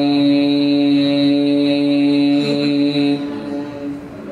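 Male Qur'an reciter (qari) in melodic tilawat, holding one long, steady note through a microphone. The note ends about three seconds in and dies away.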